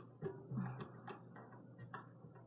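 Faint ticking, about three ticks a second, over soft low tones that come back every couple of seconds.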